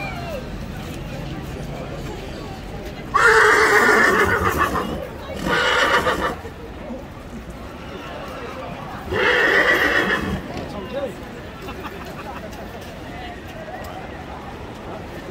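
A horse whinnying loudly three times: a call of about a second and a half, a shorter one right after it, and a third about three seconds later.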